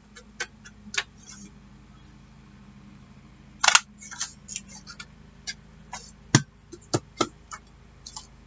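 A handheld squeeze-type craft circle punch cutting through cardstock: a short loud crunch a little before halfway, then a few sharp clicks and light paper handling near the end.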